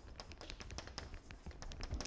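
Chalk tapping and scratching on a blackboard while words are being written: an irregular run of light, quick clicks.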